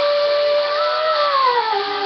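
A young woman singing one long held note without words, which slides down in pitch about a second and a half in and settles on a lower note.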